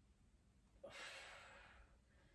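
A woman's single soft breath out, a sigh-like exhale starting a little under a second in and fading over about a second, from the effort of lowering out of a glute bridge.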